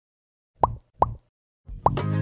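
Three short bloop or plop sound effects, each a quick rising pitch sweep. The first two come about 0.4 s apart and the third follows nearly a second later, just as music starts to come in.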